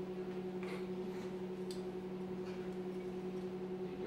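A steady low electrical hum, with a few faint taps and clicks as a glass liquor bottle is handled, passed and caught by hand.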